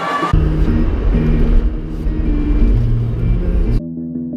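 Music with a heavy, deep bass line moving in stepped notes. It cuts off abruptly near the end and a softer synth track takes over.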